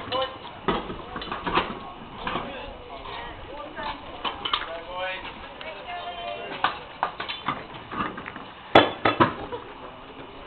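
Wheel being changed by hand: scattered metallic clinks and knocks of a cross wheel brace and wheel nuts, with voices in the background and a sharp, loud knock near the end.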